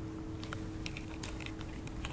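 Faint, scattered light clicks over a low steady hum: handling noise from a handheld camera being moved.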